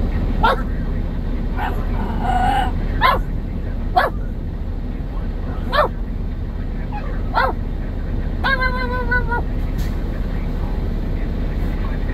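Pit bull puppy yipping: about six short yips, each falling in pitch, a second or two apart, with a brief whimper among them and a longer held whine about eight and a half seconds in. Under it runs a steady low rumble from the idling truck.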